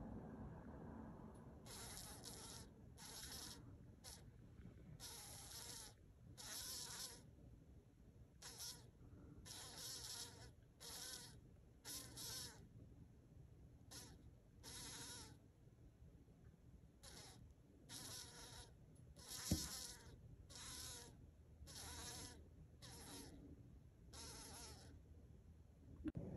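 A green bottle fly held by a small spider buzzes its wings in about twenty short, separate bursts, each under a second: a trapped fly struggling. One sharp knock comes about two-thirds of the way through.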